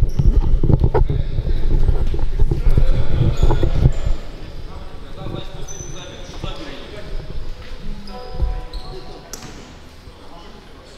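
Futsal game sounds in a large sports hall: players' voices and knocks of the ball on the wooden court, loud for about the first four seconds and quieter after.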